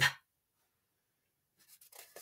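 Near silence, then faint rustling and light ticks near the end as a paper flashcard is handled and swapped.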